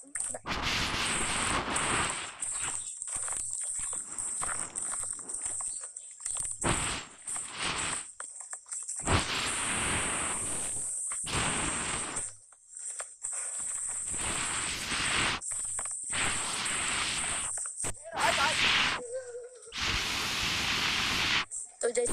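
Rough outdoor noise on the phone microphone, heard in short stretches that start and stop abruptly, over a steady high-pitched hum.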